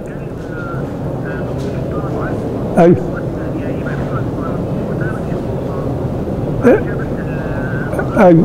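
Steady background noise, with a man giving two short replies, one of them 'aywa' (yes), into a mobile phone as he listens to a caller.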